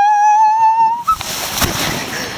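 A person's long, high "woo" shout, held for about a second and rising slightly in pitch. It breaks off into a rush of noise from a jacket rubbing over the microphone.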